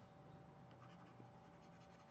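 Near silence: quiet room tone with a faint steady electrical hum.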